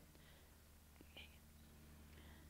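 Near silence: room tone with a faint steady hum and a faint click about a second in.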